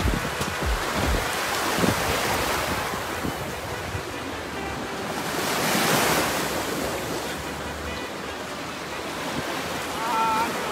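Small lake waves washing up on a sandy beach, with wind buffeting the microphone in the first couple of seconds; one wave surges louder about six seconds in.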